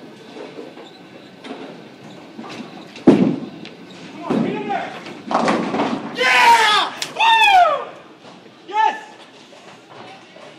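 A 16 lb bowling ball hits the old wooden lane with a heavy thud about three seconds in, then crashes into the pins about two seconds later. Loud whooping cheers follow: the strike that completes a perfect 300 game.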